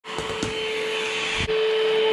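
PerySmith Kaden Pro K2 cordless stick vacuum cleaner running: a steady motor whine over a loud hiss of rushing air. A few faint clicks come near the start, and there is a brief break and change in tone about one and a half seconds in.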